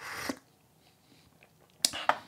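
A short slurping sip of tea from a small cup, ending early on, then a single sharp click near the end as the ceramic cup is set down on a wooden tea tray.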